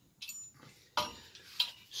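Steel acro prop being handled: its tubes, pin and chain clinking against each other, three sharp metallic clinks with a ringing after them, the loudest about a second in.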